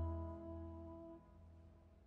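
The final held chord of a baroque voice-and-continuo ensemble dies away: steady sustained tones over a low bass note fade and stop about a second in, leaving a faint tail.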